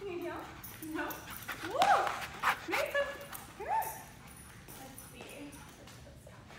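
Great Pyrenees mix dog giving three or four short high calls that rise and fall in pitch, the loudest about two seconds in, the last near four seconds.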